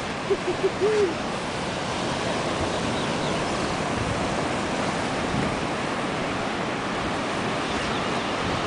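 Steady rush of ocean surf breaking on a beach. In the first second a person makes a few short hummed "hm-hm" sounds.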